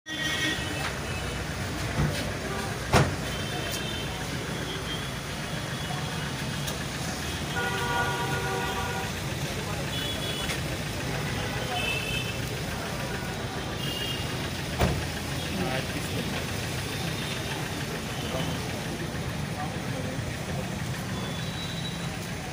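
SUV engine idling steadily under the chatter of a small crowd, with a few sharp thumps, the loudest about three seconds in.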